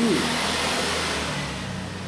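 A broad rushing noise swells at the start and fades away over about a second and a half, over a steady low hum.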